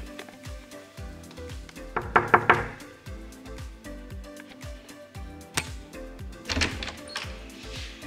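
Background music with a steady beat, and about two seconds in a quick run of about four knocks on a door.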